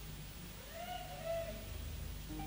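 A faint pitched note with overtones slides up and then holds for about a second, over a steady low hum, in the moments before a live band starts playing.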